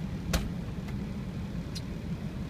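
A vehicle engine idling steadily with a low rumble. A sharp click comes about a third of a second in, and a fainter one near the end.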